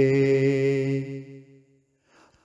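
A man's singing voice holding the final note of a sung line at one steady pitch, then fading out about a second and a half in, leaving a brief near-silent pause.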